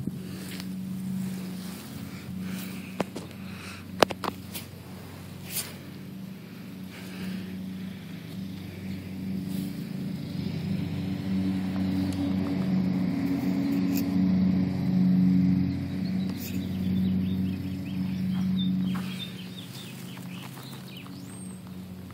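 Gasoline lawn mower engine running steadily. Its drone grows louder from about halfway and eases off again near the end. A couple of sharp clicks come about four and six seconds in.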